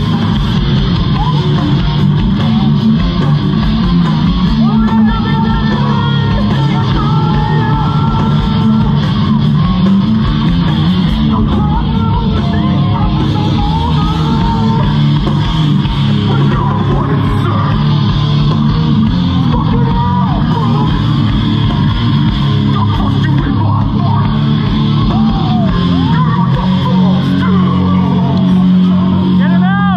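Hardcore band playing live at full volume: electric guitars and drums running without a break, heard from inside the crowd in front of the stage.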